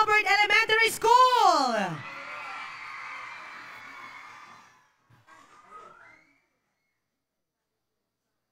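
A woman's voice speaking for about the first two seconds, with an animated, sweeping pitch, followed by faint background noise that fades out. From about six seconds in, the sound drops to dead silence.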